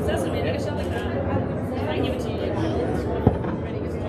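Steady background voices and court noise, with one sharp, loud smack about three seconds in from the rubber handball in play.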